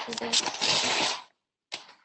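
Magazine paper rustling as it is handled and shifted on a desk, for about a second before it stops.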